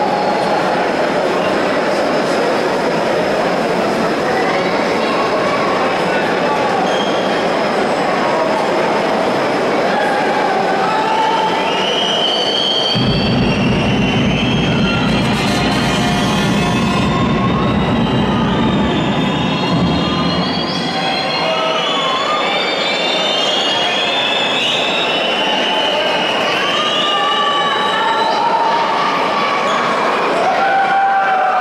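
Basketball arena crowd noise: a loud, steady din of the crowd with many short shrill whistles and squeals rising and falling above it. A low rumble joins for several seconds in the middle.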